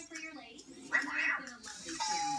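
Cozmo toy robot driving, with a short burst of high, chirping electronic vocalization about a second in.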